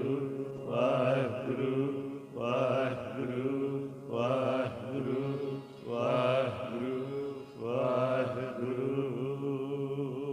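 Male singers chanting a Sikh shabad (gurbani kirtan) in repeated melodic phrases over the steady drone of harmoniums.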